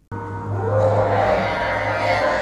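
Film soundtrack of a cave scene: a low steady drone with a held higher tone that slides up a little about half a second in, over a steady hiss.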